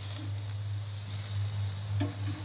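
Beef and onion patties sizzling on a grill grate: a steady hiss, with a low hum underneath.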